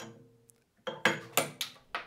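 Pendulum impact tester with a 5.5-joule hammer: a metallic clack with a short ring dying away at the start, then about a second in a quick run of sharp clacks and knocks as the swinging hammer breaks a 3D-printed tough PLA test piece.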